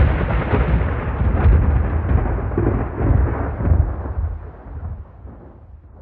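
A long, deep rumble like rolling thunder. It swells a few times, then fades out near the end.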